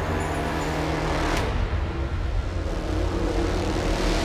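A steady low rumbling drone from the film soundtrack, with a faint knock about a second and a half in.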